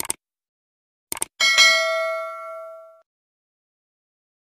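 Subscribe-button animation sound effect: a mouse click, a quick double click about a second in, then a bright notification-bell ding that rings out and fades over about a second and a half.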